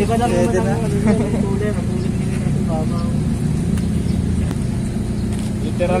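Turbocharged 1.3-litre Toyota 4E-FTE engine idling steadily. The owner says it doesn't run right yet because it was hastily put together.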